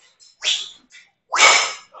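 Two forceful breaths of effort, a short huff about half a second in and a louder, longer exhale near the end, as a man swings and catches a heavy guandao.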